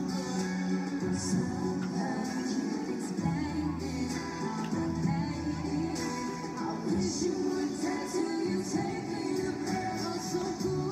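A female pop vocal group singing live in concert with band backing, recorded from the audience.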